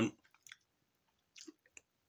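A man's drawn-out 'um' ending, then a few faint mouth clicks and lip smacks in a pause in his talk, twice, with quiet between.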